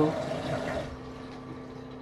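A steady low machine hum with a faint hiss that fades about a second in.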